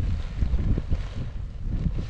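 Wind buffeting the microphone: an uneven low rumble that surges in gusts.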